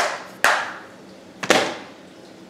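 Three sharp clacks of hands handling things at the DVD player: two about half a second apart, then a third about a second later, each dying away quickly.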